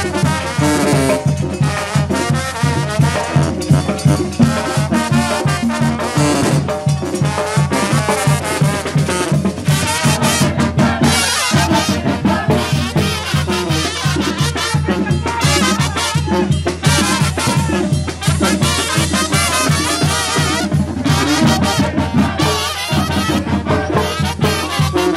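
Live brass band playing an upbeat dance number: trumpets, trombones, clarinets and a sousaphone over congas and timbales keeping a steady beat, with a short break about halfway through.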